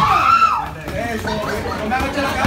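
Voices shouting in a gym during a fight: one loud, drawn-out shout at the start, then scattered calls and chatter from the corners and spectators.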